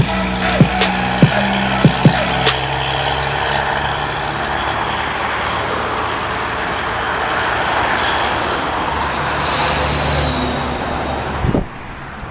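Heavy trucks running on a highway, with a quick string of about nine sharp pops in the first two and a half seconds, then steady engine and road noise that swells near the end as another truck pulls through.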